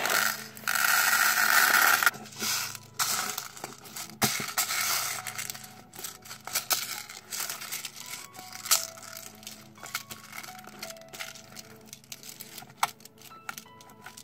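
Bean bag filler beads poured from a plastic bag into a plastic tub, a loud rustling hiss for about two seconds, then crackling and clicking as the beads are kneaded into slime by hand, thinning out toward the end. Soft background music underneath.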